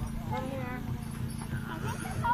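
Children's voices and chatter on an open field, over a steady rhythmic low knocking.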